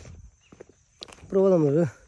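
A person speaking briefly after a short, almost silent pause, with a single sharp click about a second in.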